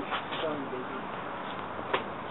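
Faint voices talking over a steady hiss, with one sharp click near the end.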